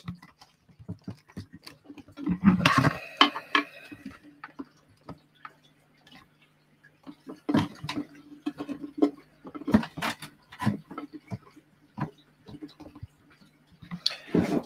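Clicks and knocks of a clear plastic tub being handled on a desk, irregular and in short clusters, over a faint steady low hum.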